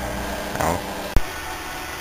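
A low, steady motor-like hum, broken about a second in by a single sharp click where the recording cuts, after which only faint background hiss is left.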